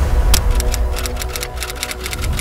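News-channel intro music with a deep, steady bass and held tones, over which comes a run of sharp clicks that grows quicker toward the end.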